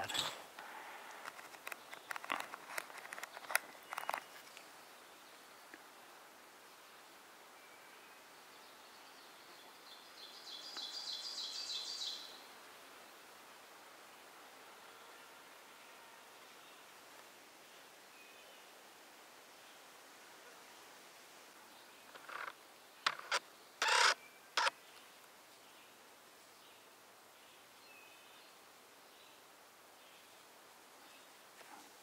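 Faint woodland background with a brief high, buzzy trill about ten seconds in, from a bird or insect, and a few sharp clicks near the start and again around twenty-three seconds in.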